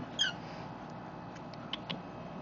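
A one-day-old lovebird chick peeping: one short, faint, high squeak falling slightly in pitch just after the start, then a few faint high ticks near the end.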